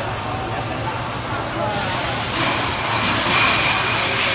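A steady rushing hiss under the murmur of people's voices, turning louder and hissier about halfway in.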